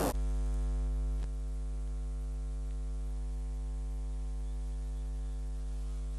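Steady electrical mains hum from the public-address sound system, a stack of even tones strongest at the lowest pitch. It steps down a little in level with a faint click about a second in.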